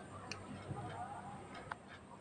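A small wire whisk stirring liquid in an aluminium pot, heard faintly: a few light ticks of metal on metal over a low hiss.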